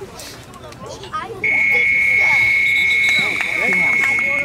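A game-clock horn sounding one long steady tone for about three seconds, starting about a second and a half in, signalling the end of the period.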